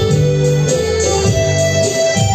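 Electronic keyboard playing held organ-like chords over a bass line, the chords changing every half second or so.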